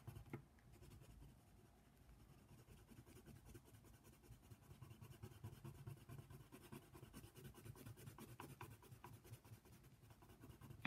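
Colored pencil scratching faintly on paper in rapid, repeated short strokes as an area is shaded in.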